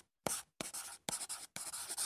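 Faint scratchy pen-writing sound effect: four short strokes, each starting with a light tick, timed to handwritten lettering being drawn.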